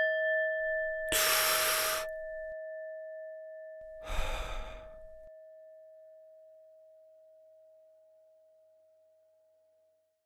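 A single struck chime rings out and slowly fades away. Over it a person takes a deep breath in about a second in, then lets it out as a sigh about four seconds in.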